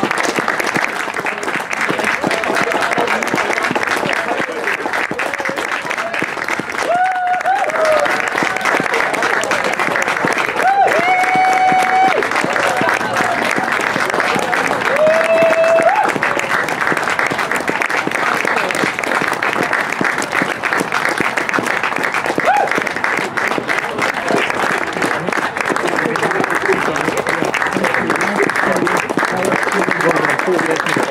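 Steady applause from a group of people clapping, with voices and a few short shouts rising over it.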